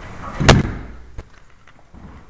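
A security door banging shut with one loud bang about half a second in, followed by a smaller click of the latch.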